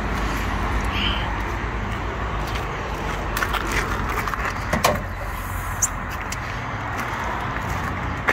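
Steady outdoor background noise with a low hum, broken by a few sharp clicks near the middle as a car bonnet is unlatched and lifted.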